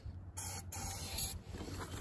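Aerosol can sprayed down a Wheel Horse garden tractor's carburetor in two short hisses, about a second in all, priming an engine that won't start.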